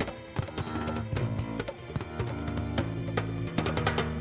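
A rock band playing an instrumental live in a rehearsal room: a sustained electric bass line under frequent drum and percussion hits.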